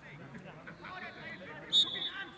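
A referee's whistle blows once, a sharp, high blast near the end, over the shouts of players and spectators across the pitch.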